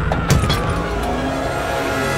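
Cartoon soundtrack music and sound effects: a falling glide with a couple of short knocks near the start, then sustained steady tones.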